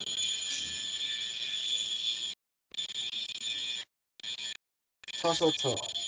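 Video-call audio breaking up: a steady hiss with a faint constant high-pitched tone that cuts out to dead silence three times in the second half, as the Wi-Fi connection drops. A voice comes back in near the end.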